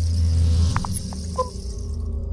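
Intro logo-reveal sound design: a deep low drone that swells up and eases a little after half a second, with a high shimmering hiss above it and a few short bright glints about a second in.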